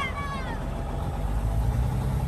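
Tractor-trailer truck's diesel engine running under way, a steady low rumble heard from inside the cab that grows a little stronger in the second half. A voice trails off right at the start.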